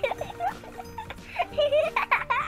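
Short, squeaky, high-pitched voice-like sound effects, cartoon giggles, over background music. The loudest squeak comes just before the end.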